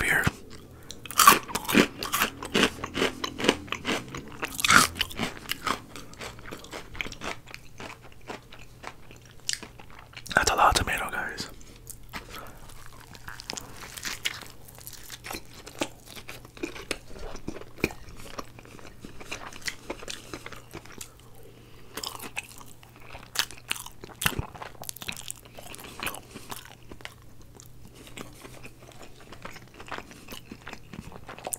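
Close-miked mouth sounds of chewing and crunching a bite of breaded fried chicken. They are densest and loudest in the first five seconds, with one louder sound about ten seconds in, then go on as softer, steady chewing.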